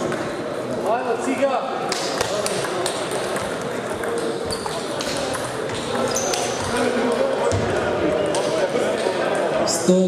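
Table tennis balls clicking off bats and tables at several tables at once, short sharp clicks at irregular intervals over a steady babble of voices.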